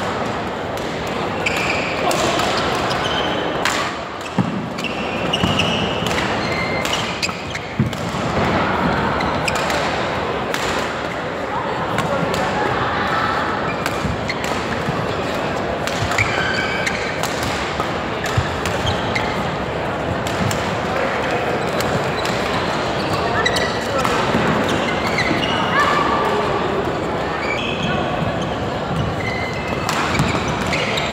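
Badminton rackets striking a shuttlecock during a doubles rally: sharp hits at irregular intervals, over steady background chatter of voices in the hall.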